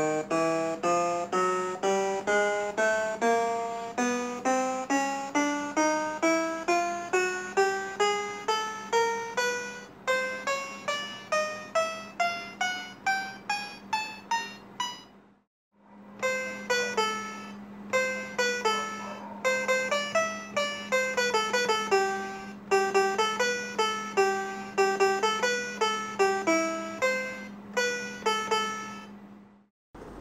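Homemade STM32-based digital piano playing sampled piano notes: the keys are played one by one up the keyboard, each note a little higher, about two to three a second, from the lowest note to the highest. After a brief pause, a simple tune is played in the middle of the keyboard. A steady low hum sounds under the notes whenever they play.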